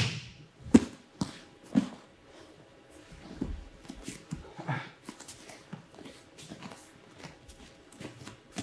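Two judoka moving on a tatami mat after a throw: a few soft thuds in the first two seconds, then quiet rustling of the cotton gis and bare-foot steps, with a brief vocal sound about four and a half seconds in.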